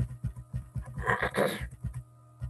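Quick run of low, dull knocks from a computer mouse's scroll wheel turning, with a louder breathy exhale about a second in.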